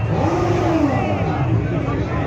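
Crowd chatter with a motorcycle engine revving once early on the way, its pitch rising and falling over about a second.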